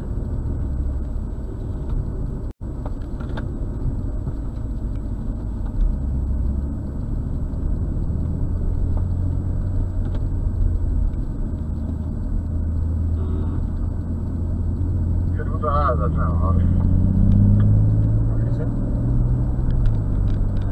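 Engine and road noise inside the cabin of a BMW M240i as it drives, from its turbocharged inline-six. The engine note rises near the end as the car accelerates.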